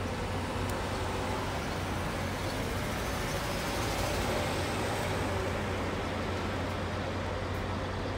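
Mercedes-Benz coach's diesel engine running as the bus drives slowly past close by, a steady low hum over road noise that swells slightly as the rear of the bus passes about four seconds in.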